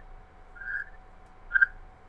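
Quiet background hiss of a video-chat line with a faint steady hum, broken by two brief, faint whistle-like tones, one about a third of the way in and a sharper one near the end.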